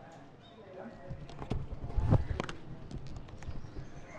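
Irregular clicks and knocks, the loudest a thump about two seconds in: handling noise from a handheld camera being swung round while walking.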